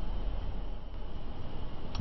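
Steady background hiss with a low hum underneath and no distinct event: room tone.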